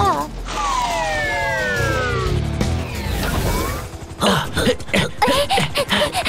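Cartoon soundtrack: background music over a low rumble, with a long falling glide in the first couple of seconds, then short clattering hits and brief character vocal sounds near the end.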